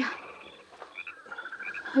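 Radio-drama jungle night ambience of small frogs chirping: short high chirps, often in pairs, with a rapid pulsing trill in the second half.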